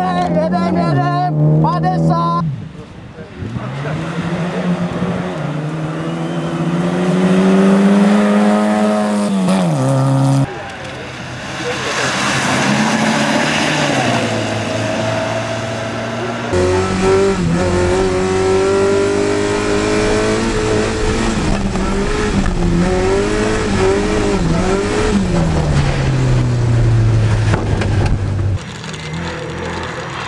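Rally car engines revving hard through snowy corners, one car after another, the engine note climbing and dropping with throttle and gear changes. The sound changes abruptly several times as one car gives way to the next.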